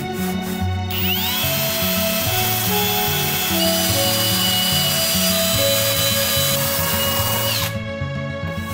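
Cordless drill spinning a brush wheel against an aquarium's crusty black plastic rim. It spins up with a rising whine about a second in, runs steadily while scrubbing, and winds down near the end.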